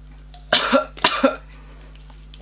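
A woman coughing twice in quick succession, the burn of a just-swallowed ginger shot with cayenne catching in her throat.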